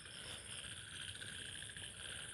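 Faint steady background noise with a thin, high, evenly pulsed tone running through it.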